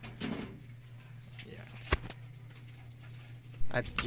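Solar inverter running with a steady low hum, and one sharp click about two seconds in.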